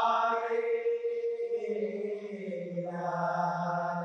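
Male voices of a Saman dance troupe chanting in unison: a long drawn-out phrase of held notes whose pitch steps down about halfway through, with no clapping or body slaps.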